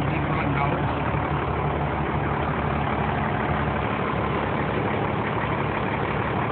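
1993 International/KME rural pumper fire truck's engine idling steadily.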